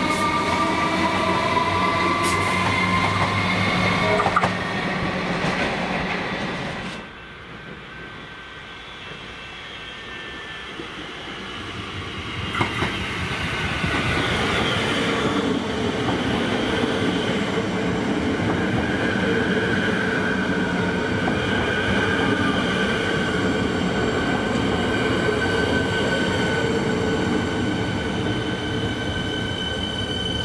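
A Comeng electric train running past with a rising electric whine over the rail noise, and a sharp knock about four seconds in. After a quieter stretch, a second suburban electric train moves slowly alongside, its traction equipment giving steady high whining tones over the running noise.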